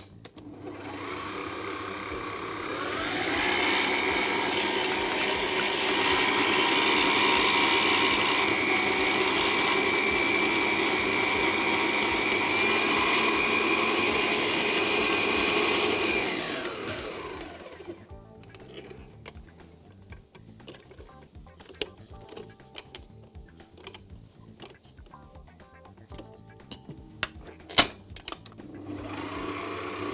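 Electric stand mixer mixing dough: the motor whine rises as it speeds up over the first few seconds and runs steadily. About 16 seconds in it winds down with a falling pitch and stops. A sharp click comes near the end, and the motor starts again just at the close.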